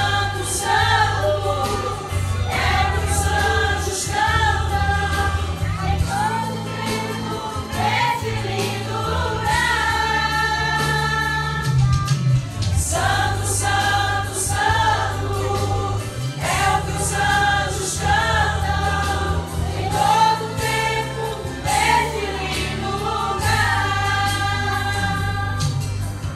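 Women's church choir singing a gospel song together, with a steady deep bass underneath the voices.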